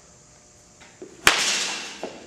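Baseball bat striking a pitched ball in a batting cage: one sharp crack about a second and a quarter in, followed by a noisy tail that fades over the next half second or so.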